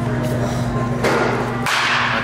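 Background music with a steady low tone that stops near the end, overlaid by a loud, noisy swish that starts about a second in and grows brighter.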